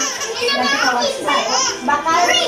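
A baby laughing and babbling, mixed with people talking.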